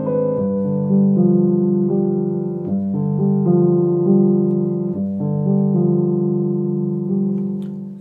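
Grand piano played slowly: a repeating progression of held chords in the low-middle range, a new chord about every second, fading a little near the end. These are the first bars of a new piece being tried out.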